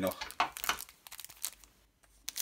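Foil wrapper of a trading-card booster pack crinkling as it is handled, a quick run of sharp crackles that thins out near the end.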